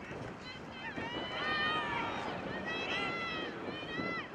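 People shouting and yelling on the field during a play of American football: several long, high-pitched yells that rise and fall in pitch, the loudest about one and a half seconds in and again near three seconds.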